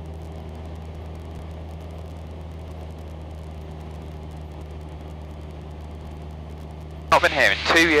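Cessna 172's piston engine and propeller droning steadily in cruise, heard inside the cabin as a constant low hum.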